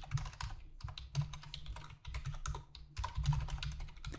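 Typing on a computer keyboard: an irregular run of quick key clicks with a few short pauses.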